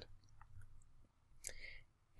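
Near silence, with a few faint, short computer-mouse clicks.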